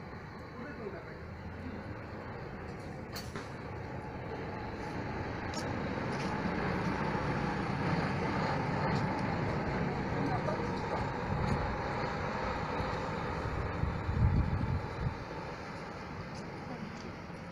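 Large diesel sightseeing coach driving past close by. Its engine sound builds over several seconds, is loudest around the middle as it passes, and is joined by a brief low rumble near the end.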